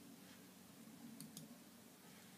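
Near silence: room tone, with two faint mouse clicks close together a little over a second in.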